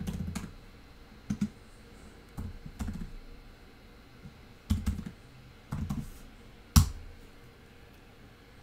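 Computer keyboard typed on in short, irregular bursts of keystrokes, with one sharper, louder key press near the end.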